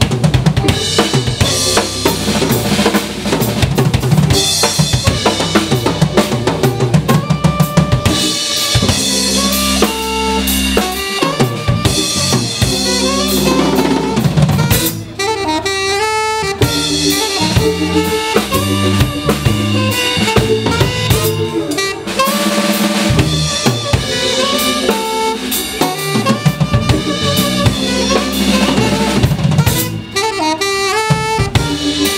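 Small jazz combo playing live: the drum kit is prominent, with snare, rimshots and bass drum, over electric bass and hollow-body electric guitar. A saxophone melody joins in about halfway through.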